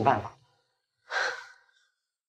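A single short breathy sigh from a person, lasting about half a second, about a second in.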